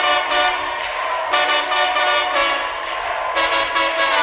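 Live band's trumpet and trombone section playing loud held chords, with the whole band surging in about every two seconds.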